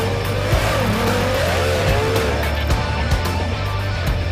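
Formula 1 powerboat two-stroke V6 outboard engine revving, its pitch rising and falling several times, mixed with background music with a steady beat.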